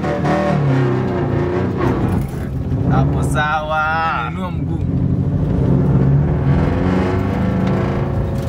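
Rally car engine heard from inside the cabin, its pitch rising and falling as it is driven hard through the gears. About three seconds in, a loud shout or laugh from an occupant rises over it for a second or so.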